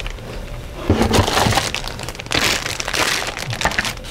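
Clear plastic bag of kit parts crinkling and crackling as it is picked up and set down, with the plastic parts inside knocking lightly.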